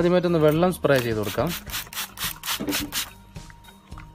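Quick, even rubbing strokes on the car's side-mirror housing, about seven a second, in a run lasting about a second and a half. A voice is heard briefly at the start.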